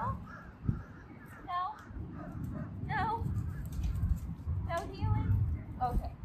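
A crow cawing again and again, in short calls about every second and a half, over a low rumble.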